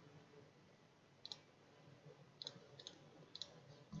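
Faint computer mouse clicks, four short ones spread over a few seconds, over quiet room tone.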